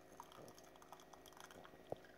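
Faint pouring of hot jelly through a mesh strainer into a glass jar, with small scattered ticks and one sharper click near the end.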